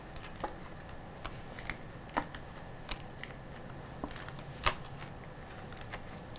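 Tarot cards being dealt and laid down on a wooden tabletop: a scattered series of light taps and card slaps, the sharpest about three-quarters of the way through.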